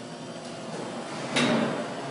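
Quiet room noise, then a sudden knock or clatter about a second and a half in.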